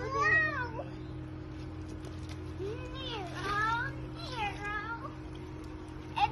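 A young child's high-pitched squealing calls, each rising and falling in pitch like a meow: one right at the start, a longer one about three seconds in, and a shorter one near five seconds. A steady low hum runs underneath.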